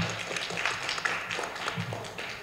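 A small audience clapping.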